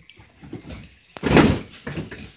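A person dropping backwards onto a mattress: one thump about halfway through.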